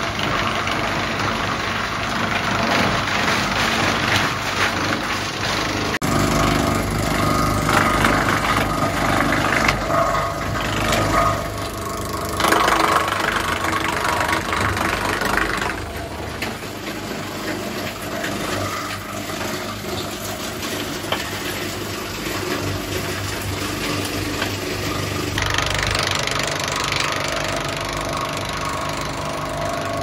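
PTO-driven wood chipper run by a Massey Ferguson tractor engine, chipping beech branches and blowing the chips out of its discharge chute. The machine noise swells as wood is drawn in and chewed, and the sound changes abruptly several times.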